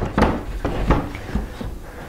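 A few light wooden knocks and some rubbing as a wooden easel tray is handled and shifted on its rails.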